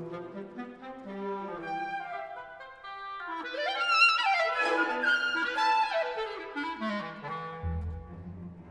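Solo clarinet playing with orchestral accompaniment. Held notes give way to a quick rising run about three seconds in that reaches the loudest, highest passage, then the line works back down as low strings enter near the end.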